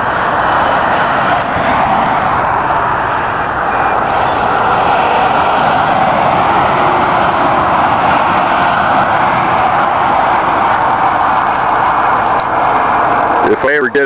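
Steady noise of highway traffic passing close by, a continuous tyre hiss that swells and eases a little.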